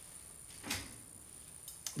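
Faint handling noise from a boxed saucepan being picked up off a counter: one brief soft knock about two-thirds of a second in, then a couple of small clicks near the end.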